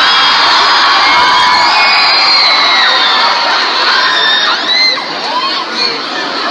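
Concert audience cheering and screaming, many high-pitched screams over a steady roar of voices; it eases off a little after about four and a half seconds.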